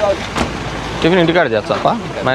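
A person talking over a steady outdoor noise haze, with a sharp click about half a second in.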